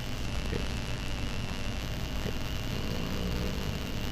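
Steady background hum and hiss with a faint, steady high tone running through it, and no speech.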